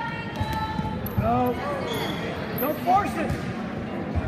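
Wrestling shoes squeaking on a gym mat as two wrestlers grapple on their feet, in short bursts of squeaks about a second in and again near three seconds.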